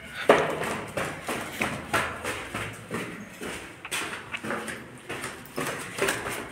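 Footsteps on a hard floor, about two steps a second, the first step the loudest.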